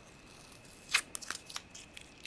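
Wax crayons clicking against a porcelain saucer as a hand sorts through them: one sharp click about a second in, then a few lighter clicks.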